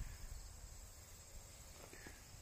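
A faint, steady high-pitched insect chorus, with a low rumble beneath it.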